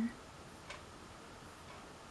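Quiet room tone with a single faint click less than a second in and a fainter tick about a second later.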